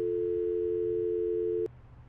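Telephone ringback tone: a steady electronic ring of the called line, heard through the phone, that cuts off sharply with a click about one and a half seconds in.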